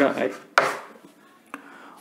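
Writing on a classroom board: a short stroke about half a second in that fades quickly, and a faint tap later as the last characters are finished.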